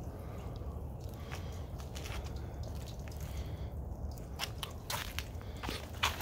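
Handling noise from a handheld phone being moved around outdoors: a steady low rumble with scattered soft clicks and crackles.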